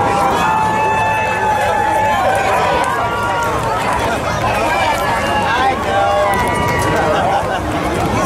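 Many children's voices calling out and chattering at once, some drawn-out high calls held for a second or more, over a low steady hum.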